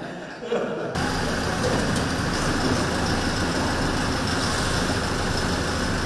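A black SUV's engine idling steadily, cutting in abruptly about a second in, with a constant wash of outdoor noise. Before it, faint voices in a room.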